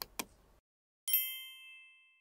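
Two short clicks, then about a second in a single bright ding: a struck chime with several high ringing tones that fade away over about a second.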